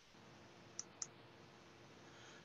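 Near silence with faint room tone, broken by two short, faint clicks about a quarter second apart near the middle.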